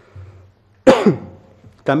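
A man clears his throat with one short, sharp cough into a desk microphone about a second in, trailing off in a brief falling rasp.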